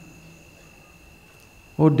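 Crickets making a faint, steady high-pitched trill in the background; a man's voice starts near the end.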